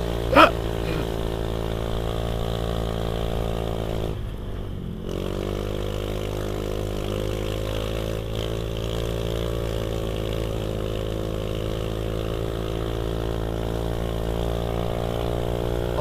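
Honda Beat Street scooter's single-cylinder engine and exhaust running steadily under throttle, with a buzzy exhaust note like a chainsaw. About four seconds in, the throttle is briefly closed and the revs dip, then climb back up and hold steady.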